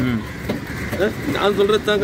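A man speaking close to the microphone over a low, steady background noise.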